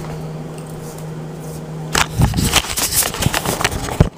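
A steady low hum for about two seconds. Then a rapid, loud run of clattering and scraping clicks, the sound of handling noise, that cuts off suddenly at the end.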